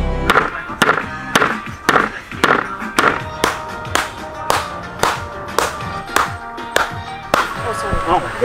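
An octopus being beaten against the ground to tenderise it: a steady run of sharp blows, about two a second, that stops near the end. Background music with string tones runs beneath.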